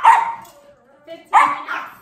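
Small Yorkshire terrier barking: one sharp bark at the start and another about a second later, in a run of persistent barking.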